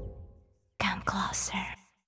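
A hip-hop track's last sound dies away, and about a second in there is a brief whispered voice of about one second, breathy and without pitch.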